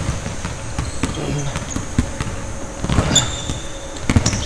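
Basketball being dribbled on a hardwood gym floor, irregular bounces, with a brief sneaker squeak about three seconds in.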